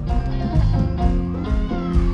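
Live band playing: a picked banjo over a steady drum beat and bass. Near the end a high gliding sound rises and falls over the music.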